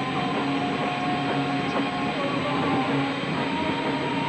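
Distorted electric guitars of a live rock band ringing out in long sustained notes with feedback, the pitch of the held tones shifting now and then, with no drum beat.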